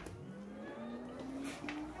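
Faint background music: a few held notes stepping upward in pitch.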